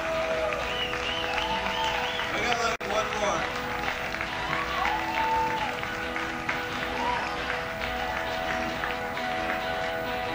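Live music: sustained ringing tones with wordless voices gliding up and down over them, amid crowd noise. The sound drops out for an instant about three seconds in.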